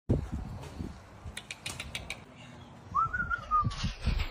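Light thumps and a few sharp clicks as a puppy moves against a metal mesh fence, then a short, high, clear whistle-like tone about three seconds in, followed by a rattle as the dog jumps up onto the fence.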